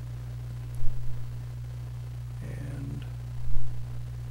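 Steady low electrical hum in the recording, with a short vocal sound about two and a half seconds in and a click about a second in.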